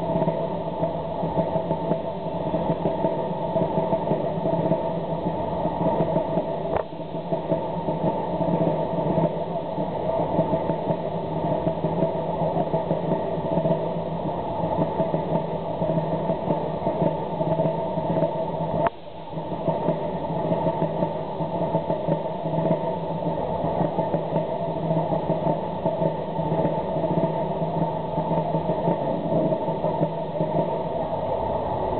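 Steady drone of road traffic, with no single vehicle standing out. The level dips briefly twice, about seven and nineteen seconds in.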